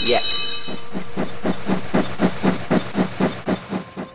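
Steam locomotive chuffing sound effect: a steady beat of about four puffs a second that slows slightly and fades toward the end, with a brief high ringing tone at the start.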